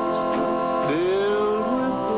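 A male singer singing a country song over a band, with long held notes and one note sliding up about a second in.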